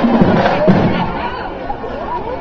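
A marching band's drums and horns cut off with a last accent under a second in, and crowd chatter and voices take over.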